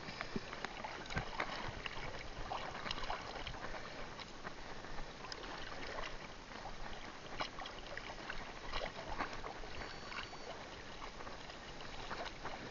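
Seawater sloshing and splashing as a fishing net and its rope are hauled through the water by hand, with frequent small, irregular splashes.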